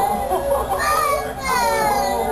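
A young boy crying in long, falling wails, mixed with other children's and adults' voices.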